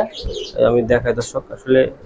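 Domestic pigeons cooing in a loft, low rolling coos in two bouts, with a few higher chirps.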